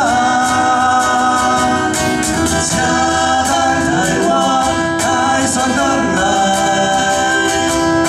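Live acoustic band: two male singers singing with long held notes over acoustic guitars, with steady hits on a cajon.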